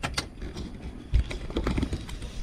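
Handling noise: scattered light clicks and knocks with a low thump about a second in, as the camera is moved and tools are handled in the car's footwell.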